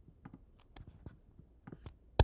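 Faint, scattered computer keyboard keystrokes and mouse clicks: a handful of light clicks, spaced irregularly, over near-silent room tone.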